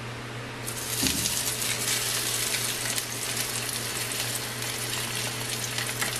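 Hot oil in a wok sizzling as a square block of food is laid into it with chopsticks: the sizzle starts under a second in, with a soft bump about a second in as the block settles, then runs on steadily. A low steady hum lies underneath.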